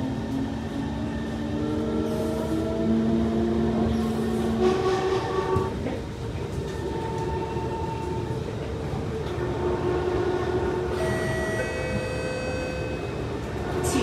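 Kawasaki C151 train's traction motors whining as it accelerates away from a station, over a steady rumble of wheels on the track. The motor tones rise in pitch for the first five seconds, break off around the middle, and give way to a set of higher steady tones near the end. The sound is the loud, rough motor noise that enthusiasts call 'motor trash', on a slow-accelerating run.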